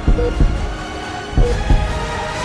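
Heartbeat sound effect over title music: two double thumps, lub-dub, about 1.3 seconds apart, each with a short beep like a heart monitor.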